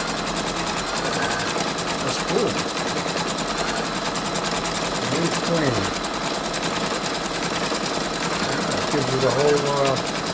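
Brother Innovis 2800D embroidery machine stitching out a design, its needle running at a fast, even rate.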